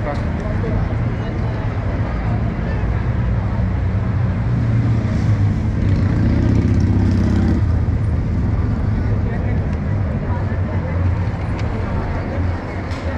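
Busy city street: a steady rumble of traffic with people chatting nearby. One vehicle's engine grows louder in the middle and drops off abruptly about two-thirds of the way through.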